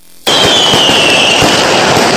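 Firework sound effect starts about a quarter second in: a dense crackling burst with a high whistle that slowly falls in pitch over it.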